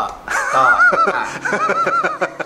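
Laughter: a run of short, repeated bursts beginning about a quarter of a second in.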